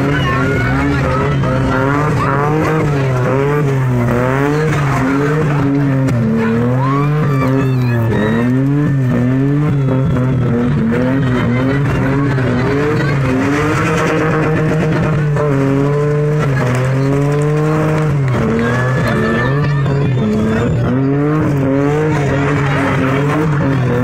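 A car being spun in tight doughnuts: its engine held at high revs, with the revs swinging up and down about once a second as the throttle is worked. The driven tyres spin and squeal against the ground, throwing up smoke.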